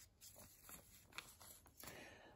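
Faint rustling and crinkling of sheets of lined notebook paper being handled, with a few soft crackles.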